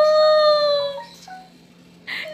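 A child's voice holding one long, high, sung-out note, a drawn-out 'Amo', sliding slightly down and stopping about a second in.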